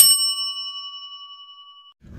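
A single bell-like ding that rings on and fades away over about two seconds.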